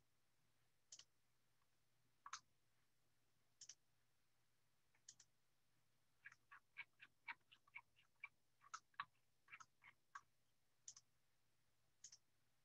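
Near silence with faint, sharp clicks: a few spaced about a second and a half apart, then a quick irregular run of about fifteen over four seconds, over a faint steady hum.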